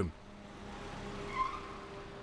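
Car rolling slowly through a parking garage, a low steady running noise with one short tyre squeak on the smooth floor about one and a half seconds in.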